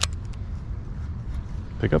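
A single sharp click at the start, followed by a few faint ticks, over a steady low rumble.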